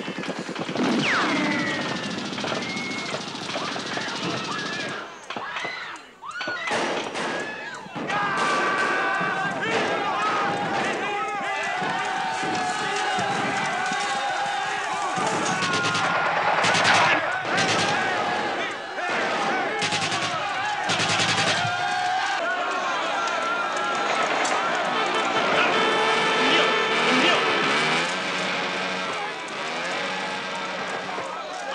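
Battle sound effects from a film: repeated machine-gun bursts and gunshots, with men shouting over the firing. There is a brief lull about five seconds in.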